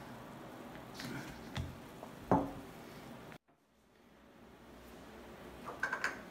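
Quiet room with a few faint knocks and rustles from a sneaker and an aerosol spray can being handled. Just past the middle the sound drops out to dead silence for about half a second.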